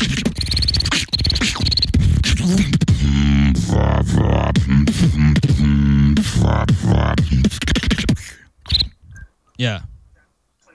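Beatboxing into a handheld microphone: quick vocal kick and snare sounds, then from about three seconds a hummed, pitched bass tone with beats running through it, stopping around eight seconds in.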